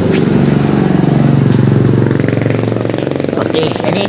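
A vehicle engine running steadily close by, then easing off about three seconds in as a voice starts.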